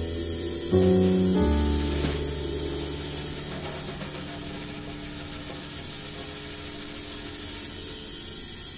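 Acoustic piano striking two chords about a second in, the second a deep low chord left ringing and slowly fading, over a steady cymbal wash.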